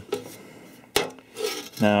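Press-formed sheet-metal panel clinking and rattling as it is handled by hand on a wooden form board, with one sharp metallic click about a second in.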